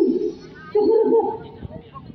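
A break in the drum-and-organ accompaniment, with two short, wavering mid-pitched vocal calls: one right at the start and another just under a second in.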